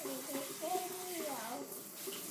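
A quiet voice, pitched like a small child's, making a brief wordless sound with a bending pitch that fades out near the end.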